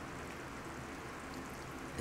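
Faint steady hiss from a saucepan of milk-and-flour sauce heating on a lit gas burner.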